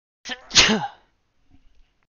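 A person sneezing once: a short catch of breath, then a loud sneeze falling in pitch about half a second in.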